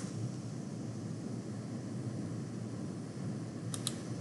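Room tone: a steady low hum with faint hiss, broken by two quick faint clicks near the end.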